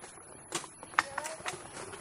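A wheeled dog rig being pulled at a run over a rough dirt trail strewn with branches, its frame and wheels rattling and giving about five sharp, irregular knocks as it bumps over the ground.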